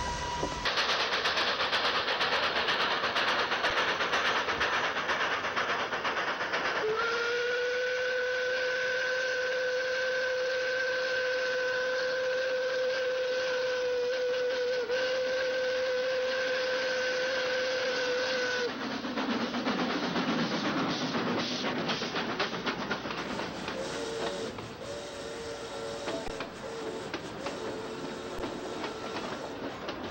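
Steam locomotive: a loud rush of escaping steam for several seconds, then one long, steady whistle lasting about eleven seconds. After the whistle the running train rumbles and clicks.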